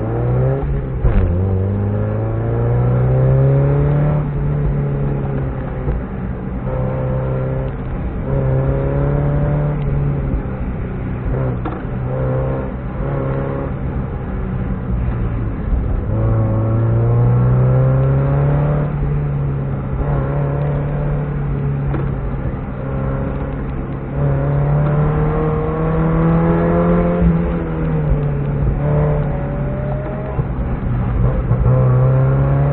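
1991 Mazda Miata's 1.6-litre four-cylinder engine, heard from inside the cabin, under hard acceleration on an autocross run. The revs rise and ease off over and over as the car accelerates and slows between sections, with long climbs at the start, around the middle and near the end.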